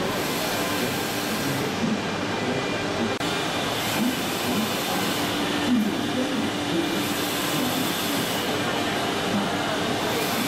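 Steady, loud mechanical din of an exhibition hall full of running machinery, with a brief drop about three seconds in.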